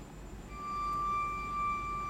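A single high violin note held perfectly steady without vibrato, entering about half a second in after a brief near-pause. The tone is thin and almost pure, with little above its fundamental.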